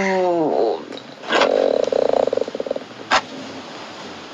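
A woman's voice trailing off on a falling note, then a buzzing, croak-like sound made in the throat or mouth for about a second and a half. A single short lip smack follows near the end.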